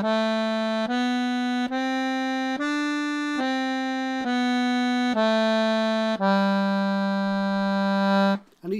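Piano accordion playing the five-note G major scale on its treble keyboard, one note at a time, stepping up and back down again, with even notes a little under a second each. It ends on a long held low G from about six seconds in.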